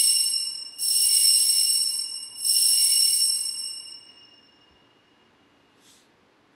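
Altar (sanctus) bell rung three times at the elevation of the host, each stroke a bright, high ringing that fades away; the last dies out about four seconds in.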